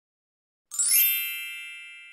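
A single bright electronic ding, a chime sound effect, struck about two-thirds of a second in and ringing with many high overtones as it slowly fades.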